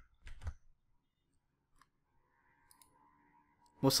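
Two short, soft clicks about half a second in, then near silence with faint room tone. A man's voice starts again at the very end.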